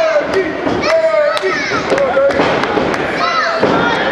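Voices shouting and calling in a hall during a wrestling match, cut by several sharp slaps and thuds.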